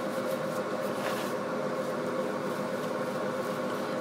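Steady mechanical hum of room background noise, with several held tones, like an air conditioner or fan running. A faint brief rustle about a second in.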